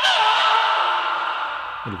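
Angry cat screech with a hiss, a sound effect. It is loudest at the start and fades away over about a second and a half.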